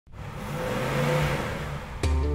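A car engine revving with a broad rush of noise, swelling up out of silence and peaking about a second in, used as an intro sound effect.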